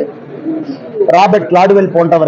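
A man speaking to reporters, resuming about a second in after a short pause; the pause holds only a faint low sound.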